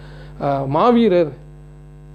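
A steady electrical hum, a stack of even tones that stands out clearly in the pauses. A man's voice speaks briefly in the middle.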